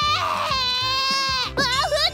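A baby crying: one long high wail that breaks into short, wavering sobbing cries about one and a half seconds in. The baby has just woken up. Background music plays under it.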